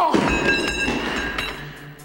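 A sudden heavy metallic clatter followed by scraping and ringing metal, as a heavy object used to force a door is let go and knocks against the door. The ringing fades toward the end.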